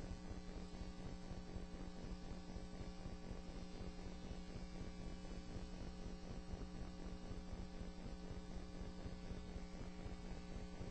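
Steady electrical hum with a faint hiss, unchanging throughout, on an otherwise idle courtroom audio feed.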